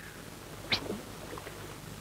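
Comic cartoon snoring: a short, high whistling squeak on the out-breath less than a second in, then a couple of fainter chirps, between long humming snores.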